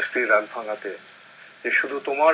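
Speech only: a man talking in Bengali in a studio, with a pause of about half a second just after the middle.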